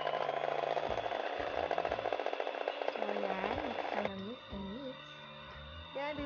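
Hanabishi electric hand mixer running at high speed, its steel beaters whipping eggs in a stainless steel bowl until light and fluffy. About four seconds in it drops much quieter, and background music with a sung melody is left.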